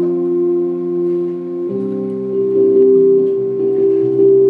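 Digital stage piano playing a Fender Rhodes electric piano voice: one chord held for a couple of seconds, then a new chord about halfway through, and further note changes near the end.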